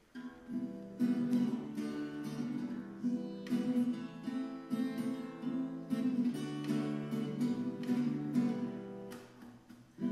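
Acoustic guitar strummed in a steady, unhurried rhythm, its chords ringing on. It comes in about half a second in and dies away briefly near the end.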